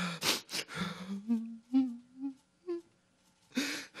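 A man crying at a microphone, trying to hold back sobs: a few sharp breaths, then a short run of low, wavering whimpers through a closed mouth, and a heavy breath near the end.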